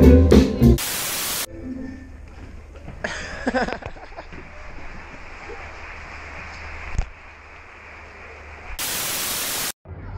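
Live band music with guitar and drums cuts off under a short burst of static-like hiss. A quieter stretch of room sound follows, with a brief voice and a single click, then a second burst of static and a moment of dead silence near the end.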